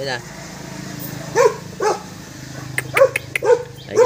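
A dog barking: four short, separate barks, each rising and falling in pitch, the first two about half a second apart and the last two near the end, with a few sharp clicks among the later ones.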